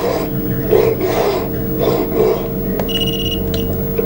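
A steady electrical hum with soft irregular rustling, and a short high electronic beep about three seconds in.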